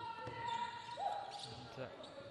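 Basketball dribbling on a hardwood court in an indoor arena. Two held tones sound over it, a higher one for about a second, then a slightly lower one.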